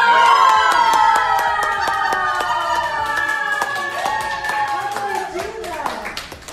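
Loud singing, mostly one long held note that slides slowly downward, over a steady clapping beat.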